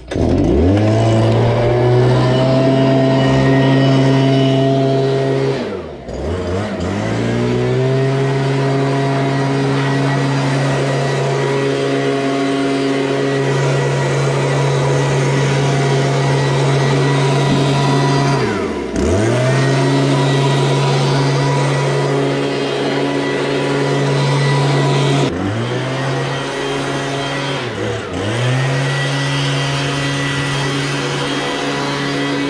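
Stihl hand-held leaf blower running at full throttle with a steady high pitch. It briefly drops in pitch and spins back up about a fifth of the way in, again just past halfway, and twice near the end, as the throttle is eased off and opened again.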